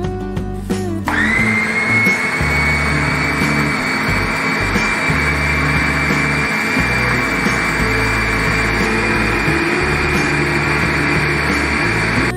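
Electric food chopper's motor starts about a second in, its whine rising quickly and then holding steady as the blades churn frozen lemon granita mixture in the stainless bowl. It cuts off at the very end.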